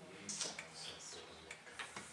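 A few faint, sharp clicks and ticks scattered through a quiet pause, over a low murmur.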